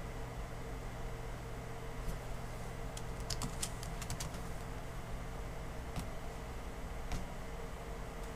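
Laptop keyboard keys typed in a quick burst of several strokes about three to four seconds in, entering a user name, with single key clicks at about two, six and seven seconds. Under it runs a steady low hum.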